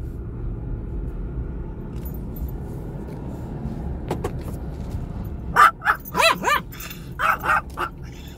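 A dog in the truck cab breaks into a run of excited, high-pitched barks and yips about five and a half seconds in, her usual reaction whenever the truck is backed up. Under it is the truck's engine running steadily.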